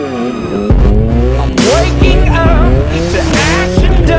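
Two-stroke dirt bike engines revving, their pitch climbing and dropping repeatedly as the throttle is worked and gears change. Wind buffets the helmet camera's microphone.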